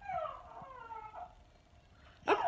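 Faint whining, animal-like cries, two or three of them sliding down in pitch during the first second or so, then fading out.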